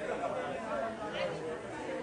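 Chatter of a seated crowd: many people talking at once in overlapping conversations, at a steady level, with no single voice standing out.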